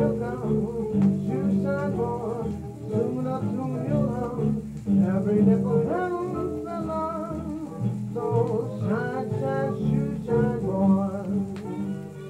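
1930s dance band music played from an HMV 78 rpm shellac record on a radiogram's turntable, heard through its speaker.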